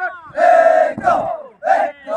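A squad of police recruits shouting together in unison on a drill movement as they come to the salute: one long loud shout, then a shorter one near the end.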